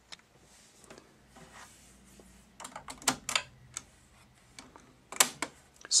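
Light plastic clicks and taps of fingers handling a Fisher DD-280 cassette deck's front-panel controls: a run of small clicks about halfway through, then a louder cluster near the end.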